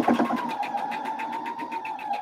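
Computerized electric sewing machine running a seam: a steady motor whine with the rapid, even ticking of the needle.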